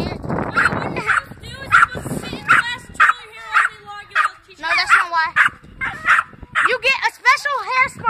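A dog barking and yipping over and over in short, high-pitched calls, with children's voices mixed in.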